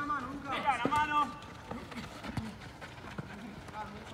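Players shouting on a five-a-side pitch for about the first second, followed by running footsteps and short knocks of the ball being played on artificial turf.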